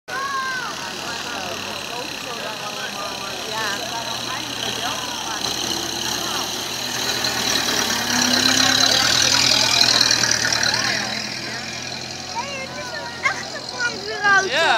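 Engine of a 1930 vintage fire engine driving slowly past, growing louder as it passes close about eight to ten seconds in, then fading as it moves away.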